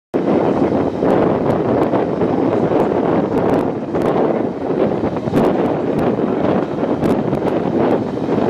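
A moving passenger train heard from a carriage window: a steady rumbling rush of running noise with wind buffeting the microphone, broken by scattered sharp clicks.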